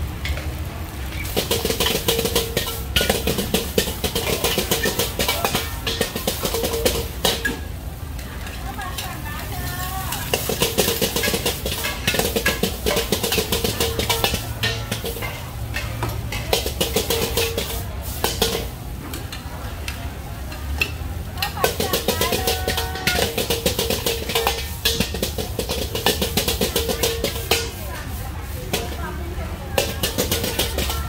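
A metal wok ladle scraping and clanking against a wok as fried rice is stir-fried over a high gas flame, with sizzling. The clanks come rapidly, with a few short pauses.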